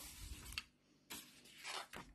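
Paper sheet rustling and sliding as a printed page is handled, in two soft brushing swipes, the second about a second in.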